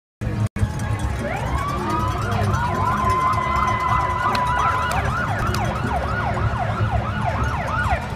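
Several police vehicle sirens sounding together. A held wailing tone is overlaid by rapid yelps that sweep up and down about three times a second.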